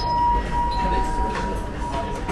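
A steady high-pitched tone starts suddenly and holds, with a fainter, lower second tone coming and going, over a steady low rumble.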